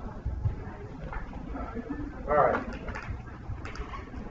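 Low, indistinct talk in a room, with one short, louder pitched sound about two and a half seconds in.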